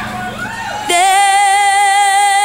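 Tejano club-mix music in which the beat and bass drop away and a woman's voice slides up, then holds one long, loud sung note with vibrato from about a second in.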